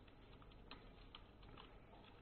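Faint computer keyboard typing: a handful of irregularly spaced keystroke clicks.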